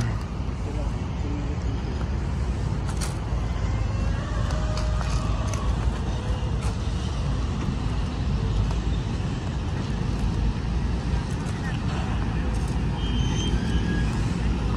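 Steady city road traffic noise, a constant low rumble with no single vehicle standing out.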